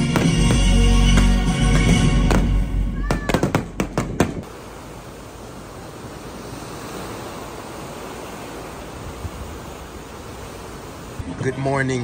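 Fireworks bursting over loud music, ending in a quick run of sharp bangs about three to four seconds in. Music and bangs then stop abruptly and a steady, even rushing noise follows. Voices come in near the end.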